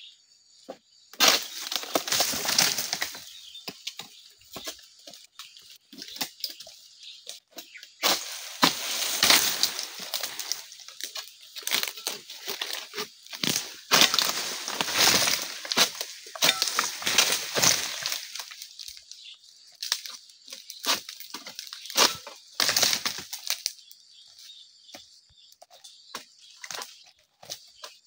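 Oil palm fronds rustling, cracking and tearing as a long-pole harvesting sickle (egrek) is pulled through them to cut them, in repeated irregular bursts, the loudest a few seconds apart.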